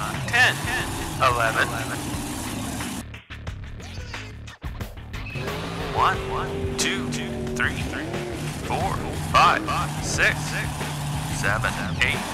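Cartoon monster truck engine sound effects, a low steady engine drone with revving, briefly cutting out about three to five seconds in.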